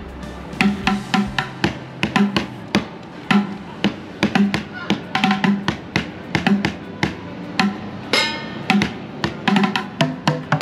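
Street drummer playing sticks on upturned plastic buckets and a plastic trash can: a quick, steady rhythm of hollow low thuds and sharp clicking strikes. One ringing stroke sounds about eight seconds in.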